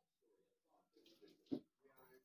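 Near silence in a kitchen, with faint scattered handling sounds and one brief click about one and a half seconds in.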